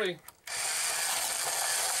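Motorized Hot Wheels Power Tower wall track running: a steady mechanical whir with die-cast toy cars rattling along the plastic track. It starts abruptly about half a second in.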